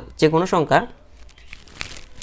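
Brief speech, then the faint rustle of a loose sheet of paper sliding and crinkling over a printed page in the second half.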